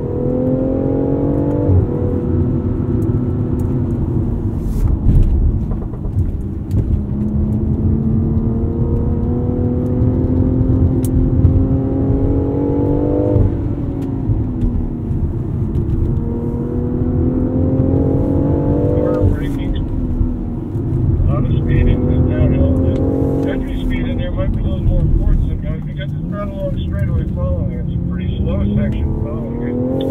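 Turbocharged 3.0-litre straight-six of a 2019 BMW X4 M40i heard from inside the cabin under hard track driving in manual mode. The revs climb steadily, drop back sharply about 2, 13, 19 and 23 seconds in, then climb again, over a steady low rumble of road noise.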